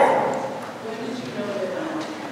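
A distant person's voice speaking, faint and indistinct in a large hall.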